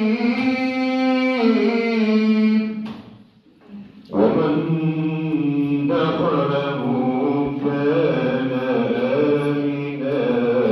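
Men chanting a religious recitation in long, held, slowly gliding notes. The chant breaks off about three seconds in and resumes a second later, fuller, with several voices together.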